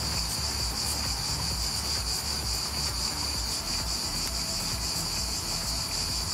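A steady, high-pitched buzzing insect chorus, with an uneven low rumble underneath.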